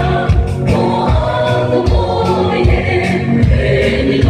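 A choir singing gospel music over a steady beat of about two strokes a second.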